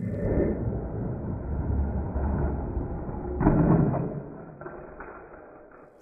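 Die-cast toy monster trucks rolling down a plastic track, a muffled rumbling rattle, with a louder clatter about three and a half seconds in that then dies away.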